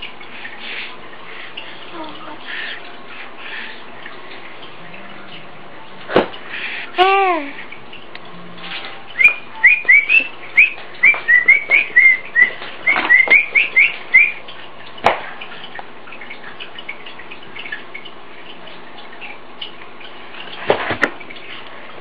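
A run of about fifteen quick, high rising whistle-like chirps over some five seconds, after a single short pitched vocal call. A few sharp clicks come and go, over a steady low background hum.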